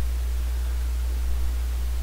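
Steady low electrical hum with an even hiss: the recording's background noise, with no other sound.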